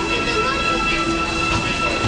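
Disneyland Railroad passenger train rolling along the track, with long steady high tones held over the rumble of the cars.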